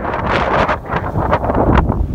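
Wind buffeting the microphone: a loud, rumbling noise that rises and falls in gusts.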